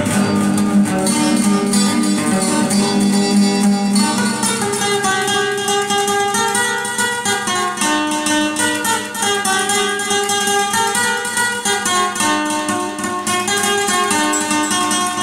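Acoustic guitar playing an instrumental passage: a plucked melody of single notes over lower bass notes, with some strummed chords.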